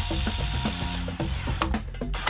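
Background music with a steady beat, over a cordless drill-driver running for about a second and a half as it drives a screw into aluminium angle.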